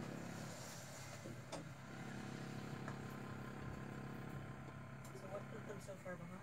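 A steady low mechanical hum, with faint voices in the background.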